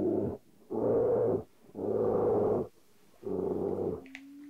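A bear growling: four long, low, rasping growls about a second apart.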